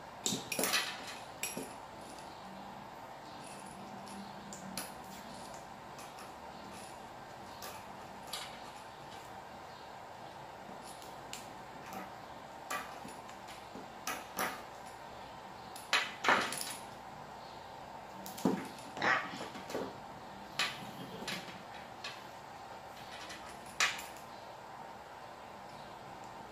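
Vinyl electrical tape being pulled off its roll and wrapped around a spliced wire, in short scattered rips, with small clicks and rustles of wires being handled. The loudest rips come in a group about two-thirds of the way through. A faint steady hum lies underneath.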